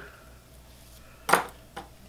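Two light metallic clicks, the first sharp with a short ring, the second fainter about half a second later: a small metal fly-tying tool handled or set down on the bench.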